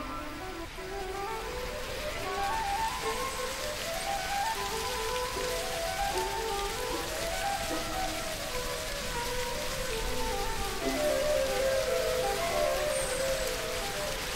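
Background music, a melody of short notes stepping up and down, over the steady rush of a mountain stream running over rocks, which comes in about a second in.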